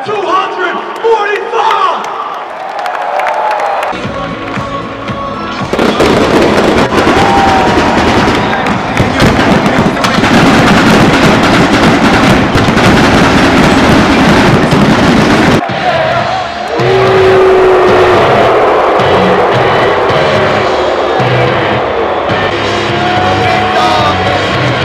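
Stadium PA music and a large crowd, with a loud stretch in the middle of about ten seconds when pyrotechnics go off over the set. Near the end the music carries on with a steady low beat.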